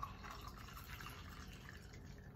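Snapple Apple juice drink poured from a bottle into a tall glass over ice, a faint steady trickle.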